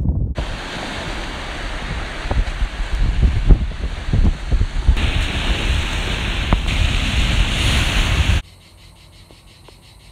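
Sea waves breaking and washing over a rocky shore, with wind buffeting the microphone. Near the end it cuts off suddenly to the faint, steady chirping of crickets.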